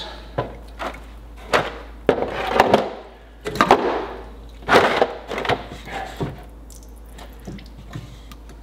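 Irregular knocks, clunks and scrapes of metal pipe fittings being handled and worked loose at a well pressure tank's manifold.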